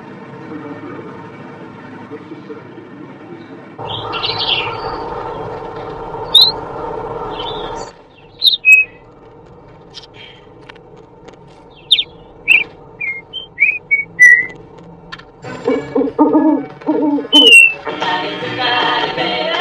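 Steady background noise runs for about eight seconds, then cuts off. A parrot follows with a string of short, sharp chirps and sliding whistles, and near the end a burst of lower, rapid calls.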